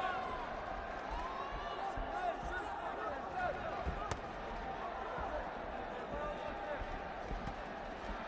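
Crowd murmur and scattered voices in a large hall, with a single sharp smack about four seconds in as a kick lands in a kickboxing bout.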